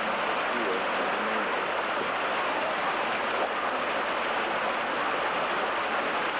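Steady rushing noise of an outdoor square, with faint voices in about the first second and a half.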